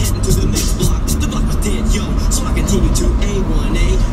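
Music with a steady beat and voices singing along, over the steady low rumble of a car driving on the road.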